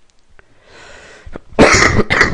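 A man coughing: a breath in, then two loud, harsh coughs near the end, from a head cold.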